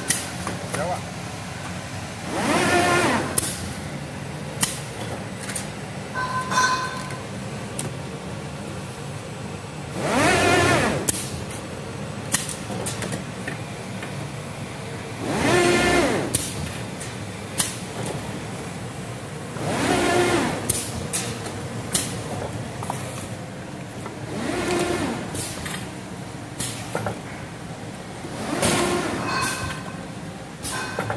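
FB1000 semi-automatic assembly machine running: a steady hum, with a motor whine that rises and falls for about a second roughly every five seconds, and sharp clicks in between.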